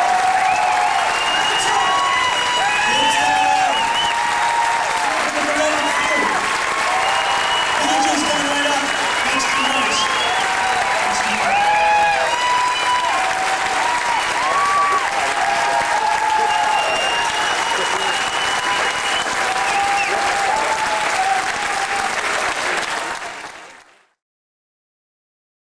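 Theatre audience applauding and cheering, with voices calling out over the clapping. It fades out just before the end.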